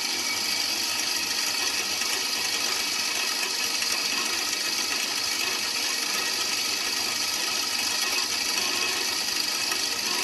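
Makita 100 V two-wheel bench grinder, with a wet-grinding wheel on one side, running freely at steady speed just after being switched on: an even motor whine and whirr with no grinding contact.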